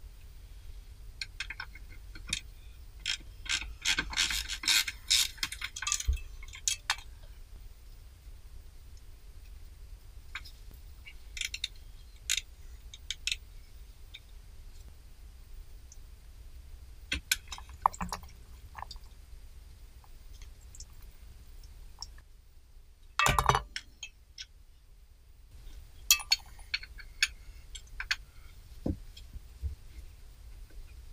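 Socket ratchet clicking and metal tools clinking in scattered bursts as bolts on a car's fuel filter are worked loose, with a dense run of clicks a few seconds in and a sharp knock past the two-thirds mark.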